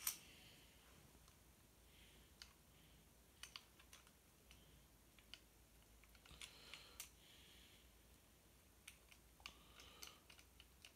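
Faint, scattered small clicks and a few brief soft rustles of something being handled, over near silence.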